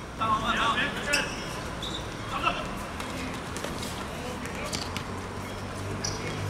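Players shouting across the pitch for about the first second, with a sharp knock about a second in and a shorter call a couple of seconds in, over steady outdoor background noise.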